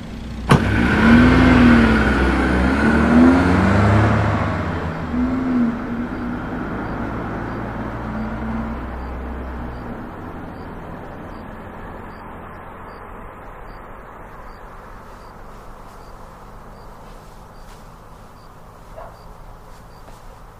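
A car door shuts with a sharp click, then the station wagon's engine revs up and down as the car pulls away, its sound fading out over several seconds.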